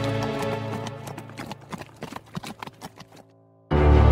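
Background music fades, giving way to the clip-clop of horses' hooves as a horse-drawn hearse carriage passes. Loud music cuts back in near the end.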